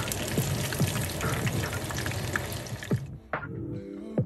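Breaded cutlets frying in hot oil in a pan: a steady sizzle with crackles that cuts off suddenly about three seconds in. Background music with a beat plays throughout.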